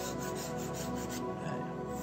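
Paintbrush bristles rubbing back and forth on a stretched canvas: a dry scratchy scrubbing in quick strokes, several a second.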